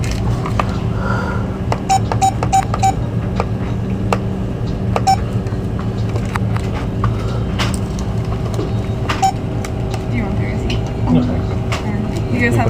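Short electronic beeps from a store checkout terminal: four quick beeps about two seconds in, then single beeps about five and nine seconds in, over a steady low hum and scattered clicks.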